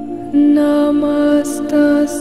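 Sung Sanskrit devotional chant to the Divine Mother over a steady drone: a voice comes in about a third of a second in and holds long, slow notes, with a hissed consonant about a second and a half in.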